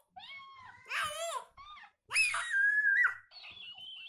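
A high-pitched squealing voice: a few short wavering squeals, then a long, loud held squeal about two seconds in.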